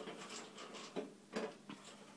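Scattered small clicks and scrapes of hands and screws working the metal access panel cover off an electric water heater, with a faint steady hum underneath.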